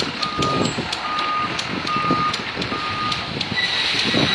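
A vehicle's reversing alarm beeping, four even half-second beeps a little under a second apart, over a running engine and a few sharp metallic clicks. The beeps stop near the end, and a steady high whine starts.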